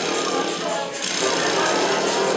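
A jumble of instruments being tried out at once, with a fast rattling percussion and crowd voices mixed in.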